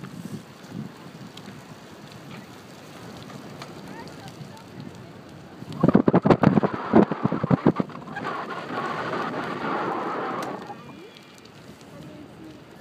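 Wind buffeting the microphone: a quiet rush at first, then a loud burst of rough, rapid thumps about six seconds in. This gives way to a steady rushing hiss for a couple of seconds, which dies down near the end.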